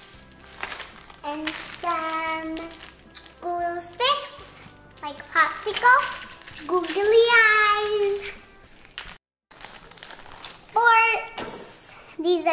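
A young girl's voice singing and chattering in drawn-out, sing-song phrases, with one long held, wavering note about seven seconds in. The voice drops out to silence for a moment just after nine seconds.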